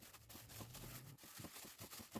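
Near silence, with faint crinkling and light clicks from a plastic-covered hand kneading sweet potato dough in a plastic bowl.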